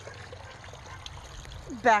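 Water running steadily from a hose and splashing into a plastic kiddie pool that holds a submersible sump pump, part of a homemade filter loop.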